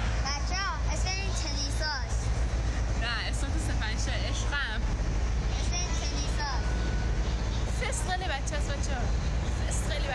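A girl talking in Persian over a steady low rumble of a running vehicle, heard from inside its cabin.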